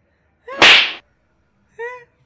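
A single loud, sharp slap to the face about half a second in. A short vocal cry follows near the end.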